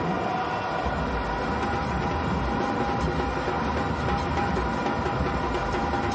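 Stadium crowd cheering a six, a steady mass of noise with plastic horns blowing held tones through it.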